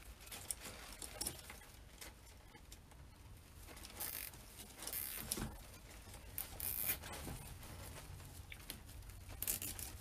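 Pine swag stems rustling and crackling as hands twist and bind two bunches together. There are scattered small clicks and several louder rustles about four, five, seven and nine and a half seconds in.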